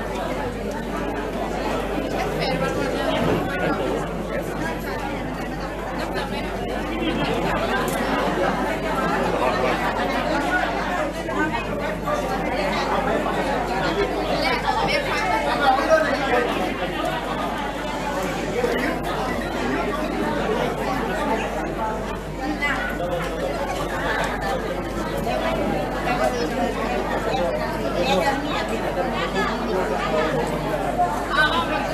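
Indistinct chatter of many people talking at once in a large hall, with no single voice standing out.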